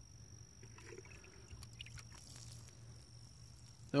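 Faint trickle of water pouring from an upturned plastic bottle onto loose garden soil.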